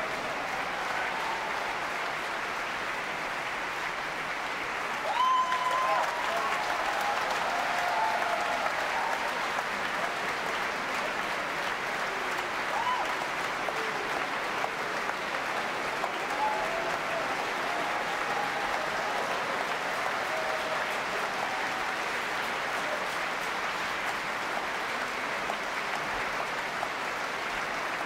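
Large opera-house audience applauding steadily, with scattered voices calling out above the clapping; the applause swells about five seconds in.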